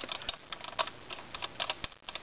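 Light, irregular clicks and taps as a shellac 78 rpm record is fitted by hand onto the spindle of a Thorens Excelda portable gramophone that is not yet playing.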